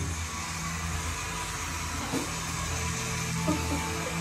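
A steady low droning hum with an even hiss above it.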